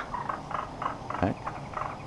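Laughing kookaburra giving a quick, irregular run of short calls while its neck is being scratched.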